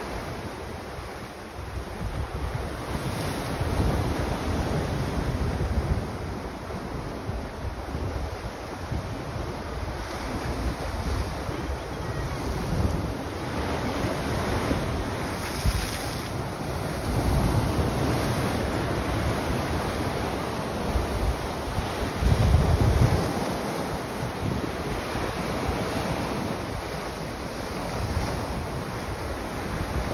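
Sea surf breaking and washing over shore rocks, with a sharper splash about halfway through. Gusts of wind buffet the microphone several times.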